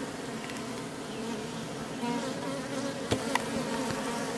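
Many honeybees buzzing over the open comb of a top bar hive, a steady dense hum of wings. The colony is stirred up by the opening, with angry guard bees in flight. Two brief clicks come a little after three seconds in.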